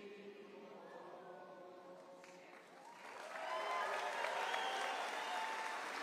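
A large crowd of voices singing together, swelling louder about halfway through.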